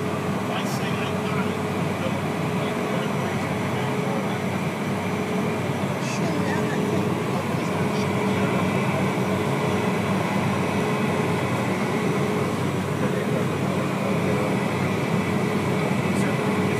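Cabin noise of a Cessna Citation business jet's twin turbofan engines running steadily while the aircraft moves on the ground, a constant rush with a steady whine. It grows a little louder about halfway through.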